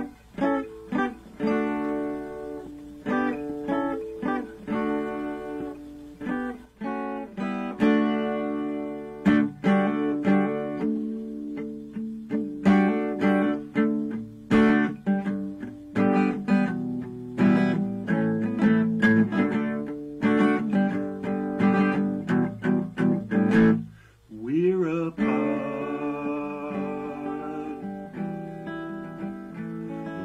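Acoustic guitar played solo: a steady run of plucked notes and chords, with a brief break about 24 seconds in before the playing picks up again.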